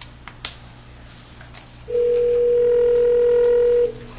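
Telephone ringback tone over a speakerphone: one steady two-second ring starting about two seconds in, as an outgoing call rings at the other end. A few faint clicks come before it.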